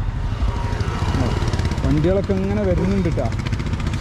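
Steady rumble of road traffic on a highway, with a man talking briefly in the middle.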